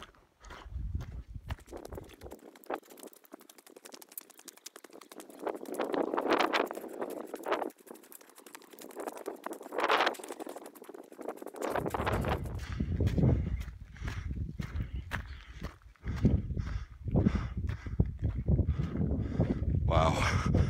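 A hiker's footsteps crunching up a rocky, gravelly mountain trail, one step after another.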